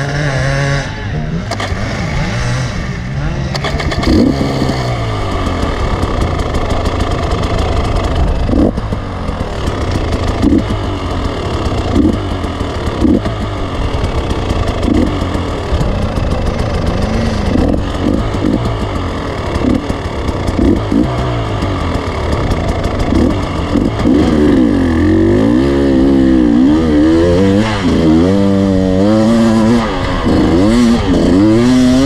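Enduro motorcycle engine heard from the rider's helmet camera, revving up and down through the gears as the bike rides a rough dirt track, with occasional sharp knocks. The revs swing harder and faster near the end.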